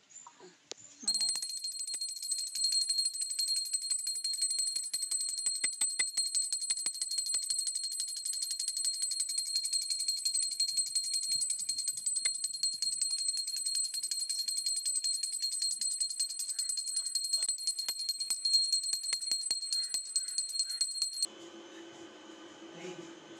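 Small brass puja hand bell rung continuously, the clapper striking fast and unevenly against a high, steady ring. It starts about a second in and stops abruptly near the end.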